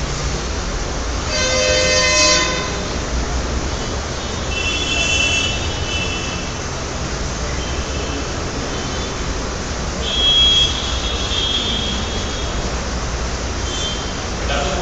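Whiteboard duster wiping across a whiteboard, giving a few short squeaks, about two seconds in, around five seconds and around ten to eleven seconds, over a steady background hiss.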